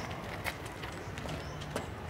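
A few sharp shoe footfalls on hard ground, spaced unevenly, over a low background hum.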